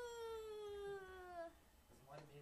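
One long drawn-out vocal call: a single pitched note that rises sharply at the start, then slides slowly downward for about a second and a half.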